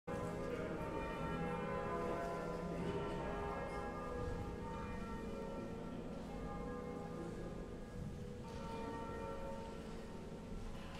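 Church bells ringing together, their tones overlapping and lingering, with fresh strokes coming in every few seconds: the peal rung for the start of Mass.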